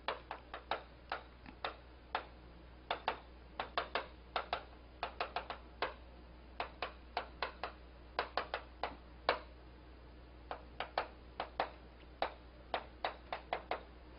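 Chalk tapping and scratching on a chalkboard as a line of handwriting is written out: quick, irregular clicks, a few a second, with a couple of short pauses between words.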